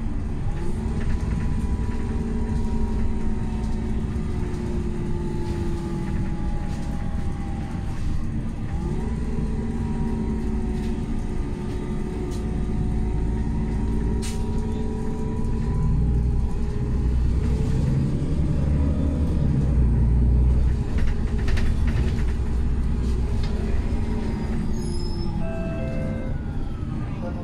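Interior sound of a Solaris Urbino 12 III CNG city bus on the move: its Iveco Cursor 8 natural-gas engine and Voith D854.5 automatic gearbox running. A whine rises in pitch and holds, once near the start and again about nine seconds in. The running grows louder and deeper for a few seconds about three quarters of the way through.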